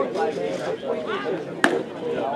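A pitched baseball smacking into the catcher's leather mitt once, a sharp pop about one and a half seconds in.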